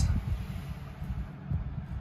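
Low, uneven rumble of handling noise on a handheld microphone over a faint room hum.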